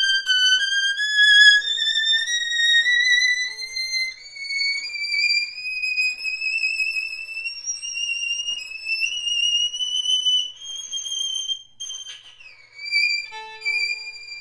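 A 1932 Rudolf Dick violin from Bremen, bowed solo: a slow climb of high notes rising step by step for about eleven seconds, then a slide down near the end, with a low note sounding briefly just before the close.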